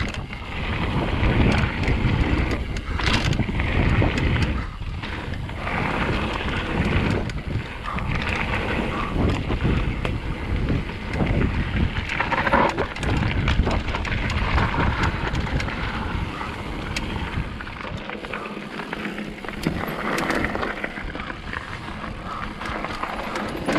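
Mountain bike riding fast down a gravel and dirt trail: wind buffeting the microphone over steady tyre noise on loose stones, with many small clicks and rattles from the bike. The low rumble eases in the last few seconds.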